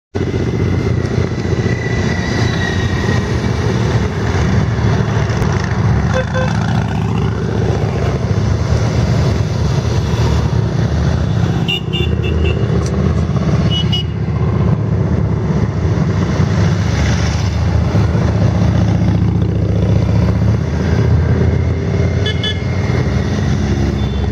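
Large touring motorcycles riding past one after another in a long column, their engines making a loud, continuous mix of engine noise.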